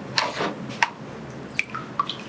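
A wet Jesmonite terrazzo tray knocking against a plastic tub of water as it is lifted out, with water dripping off it: a few light clunks and drips.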